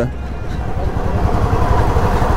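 Royal Enfield Standard 350's single-cylinder engine running as the bike is ridden at low speed, a fast, low thudding under a steady rush of road and wind noise.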